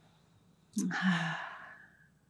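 A person's breathy sigh, starting about three quarters of a second in and trailing off over about a second.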